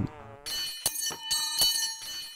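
Metallic clinking and ringing sound effect: several quick bell-like strikes, each leaving a ringing tone, beginning about half a second in.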